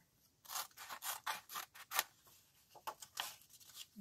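Scissors cutting through a sheet of grey construction paper in a series of short, irregular snips.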